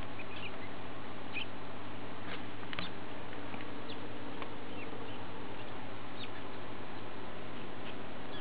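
Three-week-old rat pups squeaking while suckling and jostling at their mother: a dozen or so short, high, faint squeaks scattered through, over a steady low background hum.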